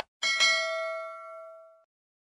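A short click right at the start, then a bell-like notification ding that rings and fades away within about a second and a half. It is the sound effect of an animated end screen's notification bell being clicked.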